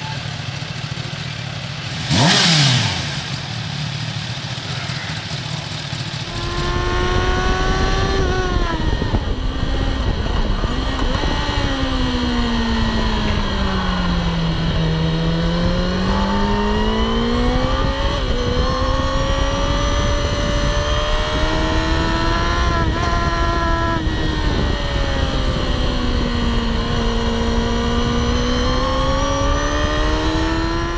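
A motorcycle passes by fast about two seconds in, its pitch falling as it goes. Then, from the onboard camera, a 2016 Kawasaki Ninja ZX-10R's inline-four engine is heard at speed on the track, its note rising and falling with the throttle, sinking low through a long stretch around the middle and climbing again.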